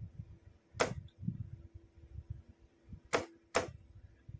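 Key switch of a Morse signalling lamp clicking as the light is keyed on and off: three sharp clicks, one a little under a second in and two close together near the end, over a faint steady hum.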